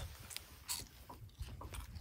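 Faint handling noises: a few scattered small clicks and rustles, about half a second apart, over a low rumble.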